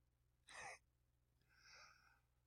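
Near silence broken by two faint human breaths close to the microphone: a short, sharp breath about half a second in, then a longer, softer breath from about a second and a half in.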